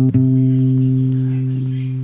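Acoustic guitar: a single low C plucked on the fifth string at the third fret, the root of a C major 7 shape, ringing on steadily and fading only slightly.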